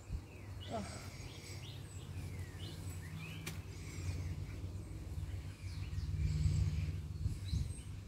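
Birds chirping in short calls over a low steady hum that swells about six seconds in, with a single sharp click near the middle.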